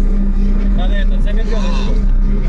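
A car audio system playing loudly, with a heavy, steady deep bass and pitched vocal sounds over it in the second half.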